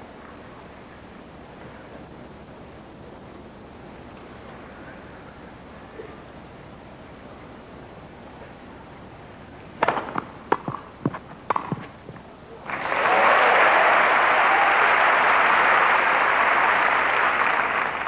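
Several sharp tennis racket hits on the ball over about two seconds, then loud crowd applause for about five seconds after the point is won.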